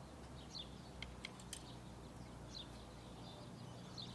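Quiet outdoor background: a steady low hum with a few faint bird chirps, and three or four light clicks about a second in.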